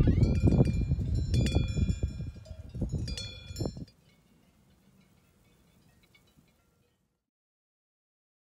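Bells on grazing sheep clinking and ringing over a gusty rumble of wind on the microphone. The sound cuts off about four seconds in, leaving only a faint trace and then silence.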